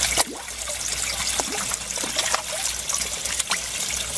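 Water trickling and splashing steadily into an aquaponic fish tank from a return pipe, with scattered small splashes and pops at the surface as jade perch take floating feed pellets.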